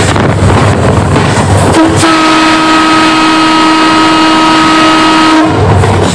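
Train horn sounding one long steady blast of about three and a half seconds, starting about two seconds in and cutting off sharply. It is set between the loud rumble of the moving train.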